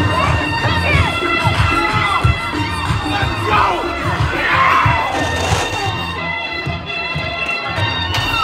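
A crowd cheering and shouting over loud DJ music with a pulsing bass beat and steady held notes; the cheering swells about four to five seconds in.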